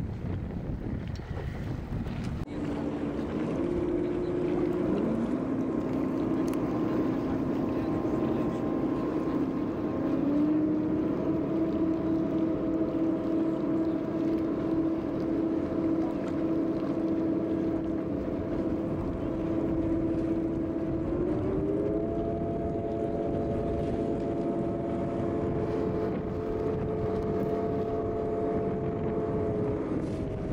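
Tour boat's engine running under way, its pitch stepping up three times, about four, ten and twenty-one seconds in, as the boat picks up speed. Wind buffets the microphone and a steady rush of water and air runs underneath.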